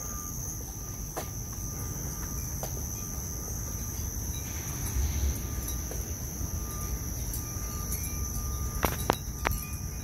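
A steady night chorus of crickets, an unbroken high-pitched trill, over a low background rumble, with a few sharp clicks near the end.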